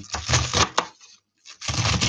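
Kitchen knife cutting through a cabbage on a chopping board, in two strokes: one in the first second and another starting near the end.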